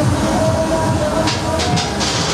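Roller coaster train running on its track with a steady low rumble and rattle as the ride starts, with music playing over loudspeakers alongside. A few short hisses come about two-thirds of the way in.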